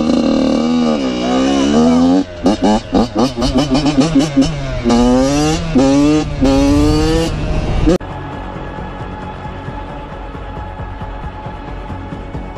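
Dirt bike engine revving hard as it pulls away, with short throttle blips and then a run of rising sweeps that drop back at each upshift. After a sudden cut, quieter music takes over.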